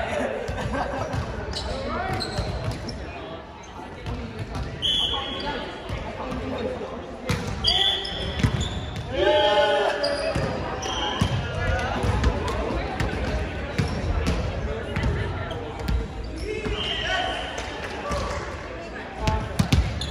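Volleyball players' voices calling out on the court, with repeated thuds of the ball bouncing and being struck on the hardwood gym floor.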